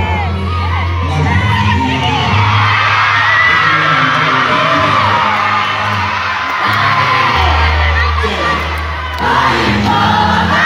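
Concert crowd cheering and shouting over loud, bass-heavy music from the sound system, the deep bass line coming in right as it begins.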